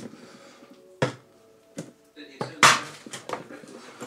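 Several sharp knocks and clinks of objects being handled, the loudest around two and a half seconds in, over faint background speech.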